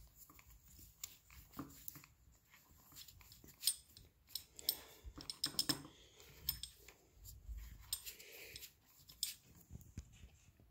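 Climbing rope and a tree-climbing saddle being handled: faint rope rustling with irregular light clicks and knocks, a few louder ones near the middle.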